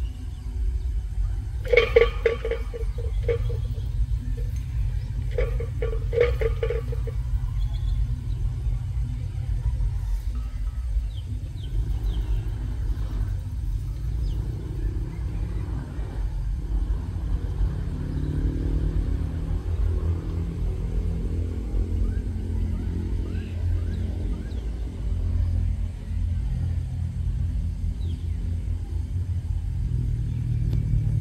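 Diesel locomotive running with a deep, steady rumble as it approaches. Two horn blasts sound a few seconds apart early on. Later the engine note rises and wavers as the locomotive works.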